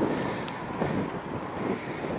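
Wind buffeting the microphone of a camera on a moving bicycle, heard as a steady rushing noise.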